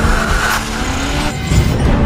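A car engine running hard and tyres skidding as the car slides through a drift on sand, with music underneath. The skid noise eases off a little over half a second in.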